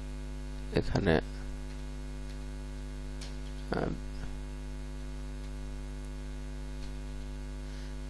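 Steady electrical mains hum in the recording, a low buzz with many even overtones, broken by two brief vocal sounds about a second in and near the middle.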